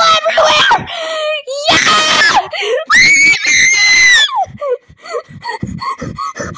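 A person yelling garbled words and screaming loudly in a high, strained voice, with two long drawn-out screams in the middle.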